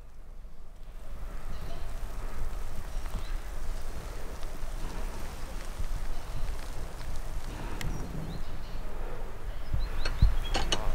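Outdoor ambience dominated by wind on the microphone: a steady low rumble under an even hiss.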